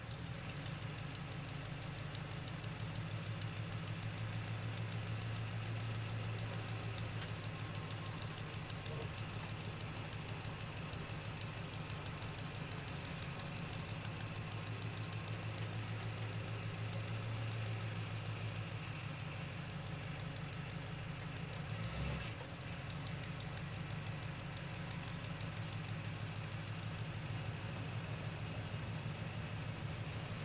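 Engine idling steadily with a low, fast, even knocking pulse, broken briefly about two-thirds of the way through.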